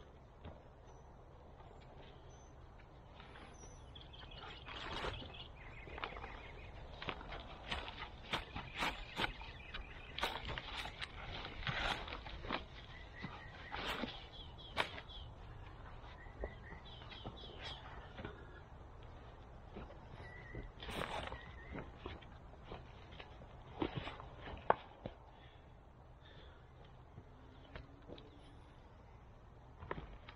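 Scattered crackling, rustling and clicking of footsteps on wood-chip mulch and of a black plastic plant pot being handled and tipped to slide out a banana plant's root ball, over a faint steady low rumble.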